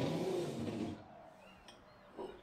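Kitchen cupboard's ribbed-glass door sliding open, a scraping rumble lasting about a second, followed by a faint click.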